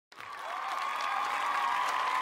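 Audience applause in a hall, swelling in over the first half second, with a steady held tone running behind it.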